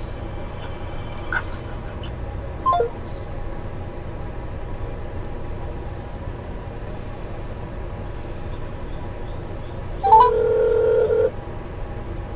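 A telephone line on hold, heard through a phone's speaker: a steady low hum with two brief falling blips early on. About ten seconds in comes a single telephone tone lasting just over a second, as the call is put through to an automated menu.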